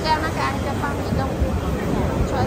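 Voices of diners talking at nearby tables in a busy food court, over a steady low hum.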